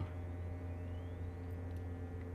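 Steady low electrical hum with faint high whine tones, the background noise of the recording setup. A faint rising whistle-like tone glides upward about half a second in.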